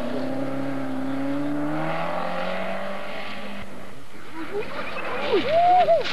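Rally car engines on a gravel stage. One car holds a steady, slowly climbing engine note as it drives away and fades. Then, from about four seconds in, a Mitsubishi Lancer Evolution approaches with its engine revving sharply up and down several times, loudest near the end.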